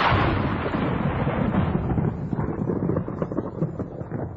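Radio-production sound effect: the tail of a loud boom, rolling on as a low crackling rumble that slowly fades out toward the end.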